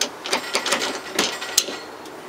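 Sharp metallic clicks and clinks from an RCBS Rock Chucker reloading press and its bullet-swaging point-starter die being worked by hand: about five irregular ticks, the sharpest near the end.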